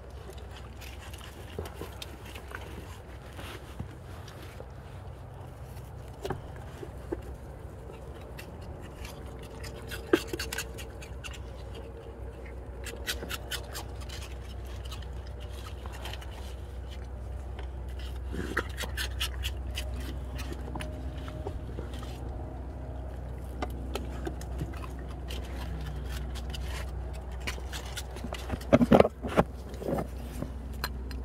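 Raccoons' claws scraping and clicking on a vehicle's plastic door sill as they climb up and reach in, with scattered scrapes and clicks over a steady low hum.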